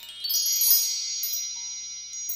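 Sparkle chime sound effect: a quick upward run of bright, high chimes that then ring on together.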